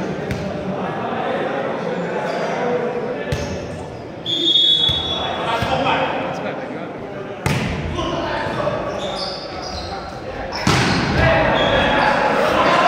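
Volleyball thuds off hands and the wooden gym floor, with sharp hits about three, seven and eleven seconds in, echoing in a large sports hall over players' and spectators' voices. A short high whistle blast sounds about four seconds in, typical of a referee's signal to serve.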